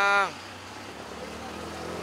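A man's drawn-out exclamation that falls in pitch and ends about a quarter second in. After it comes a quieter low, steady hum over outdoor background noise.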